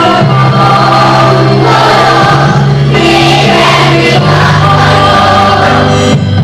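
Group of voices singing with instrumental backing music, holding long notes.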